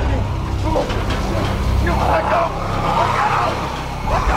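Horror TV scene audio: a man crying out in panic and zombies growling, over a loud, dense low rumble.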